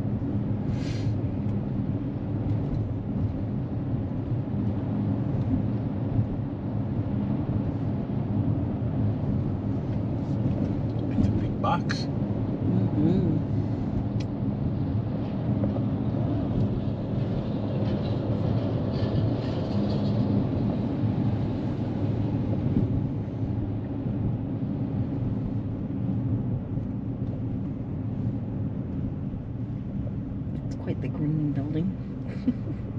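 Steady road and engine noise heard from inside a moving Kia SUV's cabin, a continuous low rumble with no sudden events.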